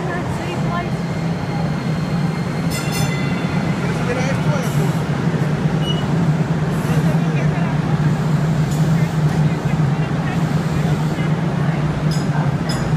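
Dallas DART light rail train pulling along the platform and slowing to a stop, with a steady low rumble throughout. A brief high-pitched ringing comes about three seconds in.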